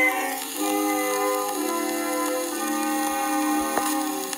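Instrumental introduction of a 1909 popular-song record played back from an early acoustic recording: several instruments playing steady melody notes in a thin, bass-less sound. Constant surface hiss runs under the music, with a few sharp surface clicks near the end.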